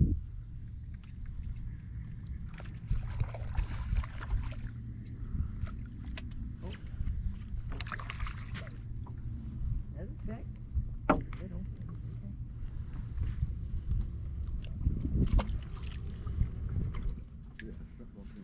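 Small fishing boat drifting on calm water: a steady low rumble of wind and water against the hull, with a few scattered knocks on board and brief faint voices.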